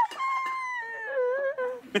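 A woman's high-pitched, drawn-out vocal whine lasting about a second and a half, wavering and dropping in pitch near the end, then breaking into a laugh.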